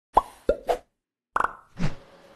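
Edited-in sound effects: three quick pops that bend in pitch, a short gap of dead silence, then a fast rattle of clicks and a sound that sweeps down in pitch near the end.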